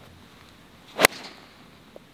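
A golf club striking a ball once, a single crisp, sharp click about a second in. It is a shot hit out of the middle of the clubface.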